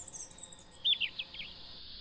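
Small birds chirping: a thin, high twittering, then a few quick falling whistled notes about a second in.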